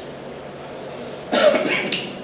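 A person coughs once, a short harsh cough about a second and a half in, over a steady low room hum.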